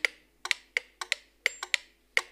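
Mechanical metronomes ticking slightly out of step with each other: sharp wooden ticks that fall in uneven close pairs, about three pairs a second.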